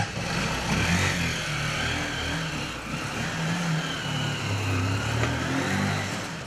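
Small delivery motorcycle engine running as the bike pulls away, its pitch rising and falling with the throttle. The sound starts suddenly.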